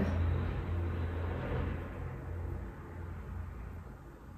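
A steady low hum under a rumbling hiss that fades away over a few seconds.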